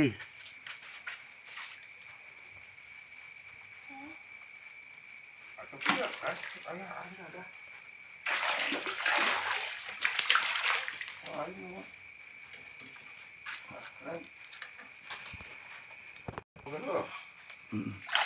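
Water splashing and sloshing at the edge of a fishing pond, loudest in a burst of a few seconds around the middle.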